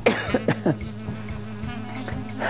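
A man laughing in a few short bursts near the start, then quieter, over a steady low background tone.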